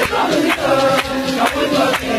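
A group of voices singing together in a chant-like song over a steady drum beat of about two strokes a second.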